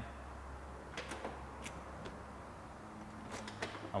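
A few faint, sharp clicks and taps of Vespa keys being handled, over a low steady room hum.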